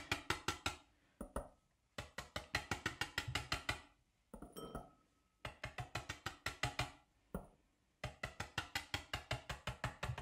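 Wire balloon whisk dabbed repeatedly onto paper on a table: quick runs of light taps, about seven a second, in four bursts with short pauses between.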